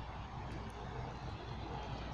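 Steady low rumble of distant road traffic, with no single vehicle standing out.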